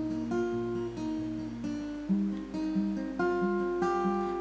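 Steel-string acoustic guitar strummed steadily, about two strokes a second, moving to a new chord about halfway through.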